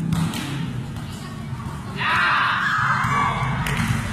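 Children's voices and shouting, with a volleyball thudding near the start. About two seconds in, a loud, drawn-out shout lasts nearly two seconds.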